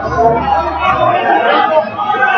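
Overlapping chatter and calling out from spectators' voices at a wrestling mat, with a low rumble during the first second.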